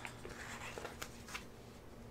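Faint rustle and light ticks of a paper sticker sheet being handled and a small sticker pressed onto a planner page, with a few soft ticks in the first second and a half.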